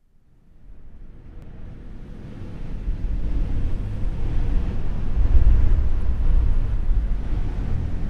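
A low, rumbling noise with a hiss above it fades in from silence and swells over the first three seconds, then holds steady with no clear tune.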